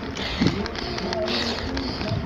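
Mechanical rattling and clicking from a bicycle being ridden uphill.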